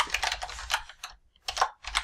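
Computer keyboard typing: a quick run of keystrokes for about the first second, then a few separate key presses near the end.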